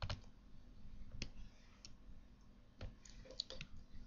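Faint, irregular clicks from computer input while a line is being drawn on screen: single clicks about a second apart, then a quick run of several near the end.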